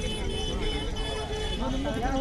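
Indistinct voices of people talking, fainter in the middle and picking up near the end, over a steady low rumble.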